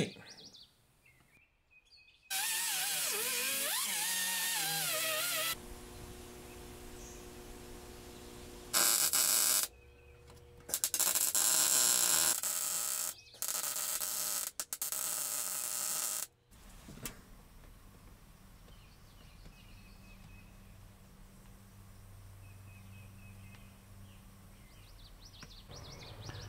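A run of separate work noises. A few seconds in comes a loud whirring with a wavering pitch. From a little past a third of the way in, an arc welder crackles in bursts for several seconds. The last part is quieter: a low steady hum with faint bird chirps.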